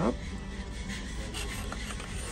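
Knife sawing through a grilled pineapple on a churrascaria skewer, a soft rubbing scrape with a couple of faint ticks, over a low steady hum.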